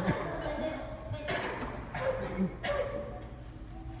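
Low background voices in brief snatches, with a couple of light knocks, over a steady low room hum.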